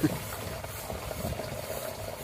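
Water poured in a steady stream from a metal pot into a plastic container, splashing as it fills.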